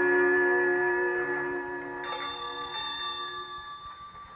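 Orchestral bridge music in a radio drama marking a scene change: a held chord slowly fades, and a high sustained note comes in about halfway and rings out as the music dies away.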